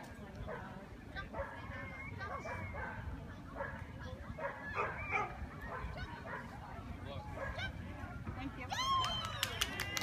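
A dog yipping and whining in a quick series of high, arching cries near the end, over the murmur of people talking in the background.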